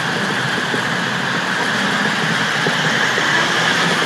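Hi-rail boom truck travelling along the rails on its road tyres and steel guide wheels, its engine running in a steady, even rumble.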